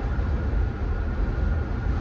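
Steady road and engine rumble inside the cabin of a moving vehicle.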